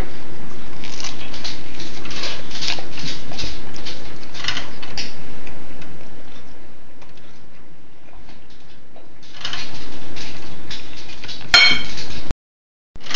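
Fork clinking and scraping on a ceramic plate while a bite of bratwurst is chewed, with a sharp ringing clink near the end.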